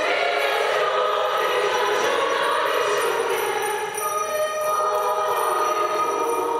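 Youth choir singing sustained chords in several parts, with a brief dip about four seconds in before the next held chord.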